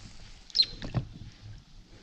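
Oar worked against the inflatable rubber dinghy: a short, high squeak about half a second in, then a few knocks with a dull thump about a second in.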